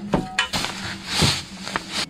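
Roofing membrane rustling and crinkling as it is handled and a spirit level is pressed against it, with a couple of light knocks early on.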